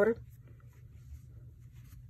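Faint, scattered soft rustles and light ticks of yarn being worked on a metal crochet hook and the crocheted piece being handled, over a low steady hum.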